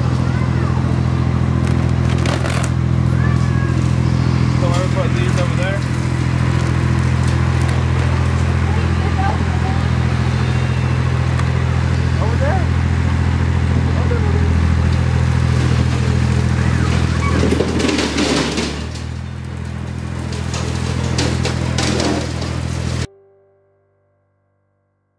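Steady low drone of a vehicle engine idling, with occasional short knocks and rustles as feed bags are handled. The drone cuts off abruptly about a second before the end.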